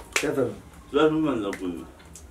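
A man talking, with a sharp snap-like click right at the start.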